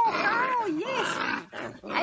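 A Belgian Malinois puppy, held up off the ground, cries out in long wavering calls that rise and fall in pitch, with a short break about three quarters of the way through.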